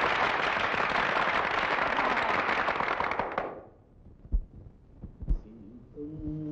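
Audience applause, a dense crackle of many hands clapping, which dies away about three and a half seconds in. Two short dull thumps follow about a second apart.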